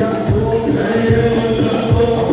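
Live Moroccan Aissawa music: a group of men chanting together over a steady drum beat.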